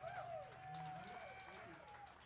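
Faint whoops and calls from a concert crowd, their pitch sliding up and down.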